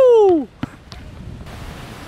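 A high voice calls out one long exclamation that falls in pitch, reacting to a child's shot. Then a basketball bounces faintly twice on the hard outdoor court.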